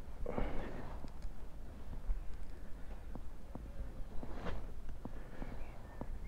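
Quiet outdoor background with a steady low rumble and a few faint, sharp clicks, the sound of a handheld phone gimbal being handled.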